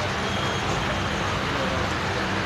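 Steady background noise in a shop, an even hum with no distinct events.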